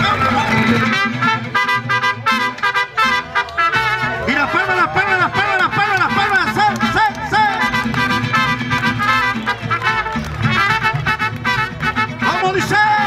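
Live mariachi band playing, with trumpets carrying the melody in repeated arching phrases over the rhythm section.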